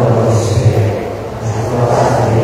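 A group of voices singing together, with held notes that change about every half second and hissing consonants between them.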